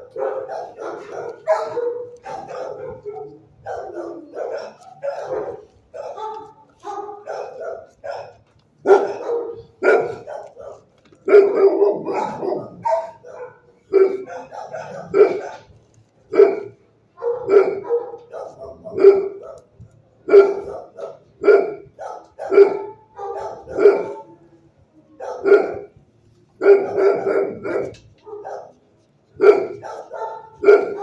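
Dog barking over and over: quick, crowded barks at first, then single barks about a second apart through the second half.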